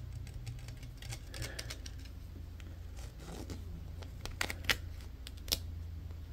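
Fingers handling a Blue Yeti microphone's grille: a quiet scatter of small taps, scratches and clicks, with two sharper ticks near the end. The mic is not recording itself, so the sounds come through faintly.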